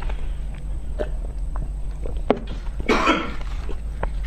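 Close-miked mouth sounds of a person eating chocolate mousse cake: scattered small wet chewing clicks, then a short breathy burst about three seconds in, over a steady low hum.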